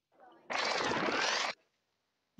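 A short scene-transition sound effect: a burst of dense noise about a second long, with pitches sweeping down and up across each other, starting and stopping abruptly.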